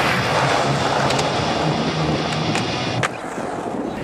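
Skateboard wheels rolling over a smooth skatepark surface, a steady rolling rumble, with a sharp knock about three seconds in after which the sound drops away.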